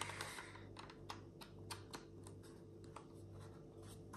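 Faint, irregular light clicks and scratches of hands handling a plastic external SSD enclosure and its USB cable, over a low steady hum.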